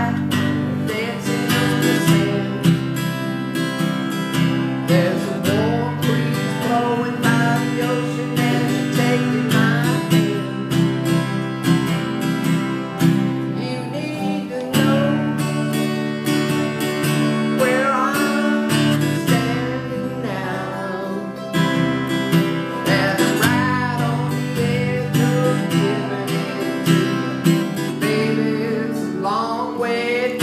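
Acoustic guitars strummed in a steady rhythm, with a man singing a country song over them.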